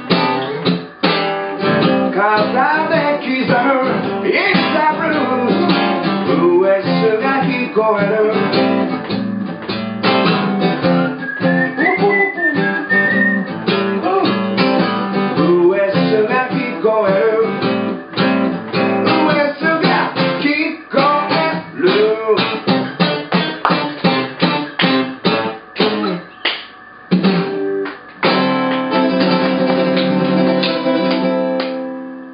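Ovation Super Adamas acoustic guitar played solo: single-note lead lines, turning in the second half to a run of short, choppy picked strokes, then ringing strummed chords near the end.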